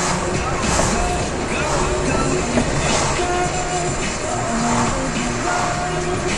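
Music playing on a car radio inside a moving car: a melody of short held notes over the steady low rumble of engine and road noise.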